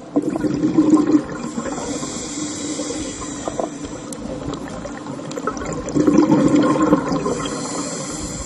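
Steady rushing, hissing water sound of underwater footage, swelling a little late on.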